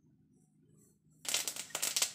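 Mustard seeds dropped into hot ghee in a kadhai, suddenly starting to sizzle and crackle about a second in.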